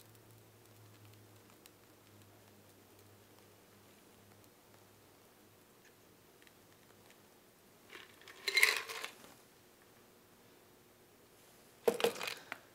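Quiet pour of a thick egg-white cocktail through a fine strainer, then a short clatter of metal bar tools, the cocktail shaker and strainer being handled and set down, about eight and a half seconds in, with another brief clink at the very end.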